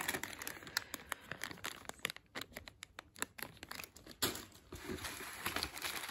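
Clear plastic bags holding model-kit sprues crinkling as they are handled and rummaged through in the kit box, in irregular crackles that ease off in the middle.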